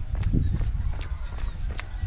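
Jogging footsteps on brick paving, a run of repeated footfalls over a heavy low rumble, picked up by a GoPro Hero 7 Black's internal microphone held at arm's length.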